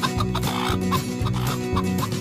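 Hens clucking in short, separate clucks over background music.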